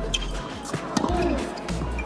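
Tennis ball struck with racquets during a baseline rally: sharp hits near the start and about a second in, with music playing underneath.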